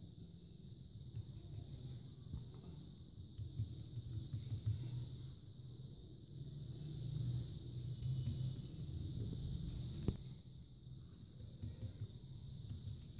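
Faint handling sounds of hands folding soft, oiled dough on a plastic tablecloth, swelling as the folds are made, over a steady high whine. A single sharp click about ten seconds in.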